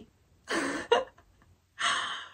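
A woman laughing breathily in two short gasping bursts, about a second apart.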